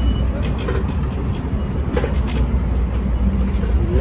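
Road traffic on a city street: a steady low rumble of motor vehicles.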